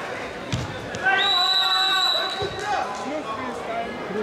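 Voices echoing in a large sports hall, cut across by one steady, high whistle blast about a second in that lasts just over a second, with a couple of dull thumps.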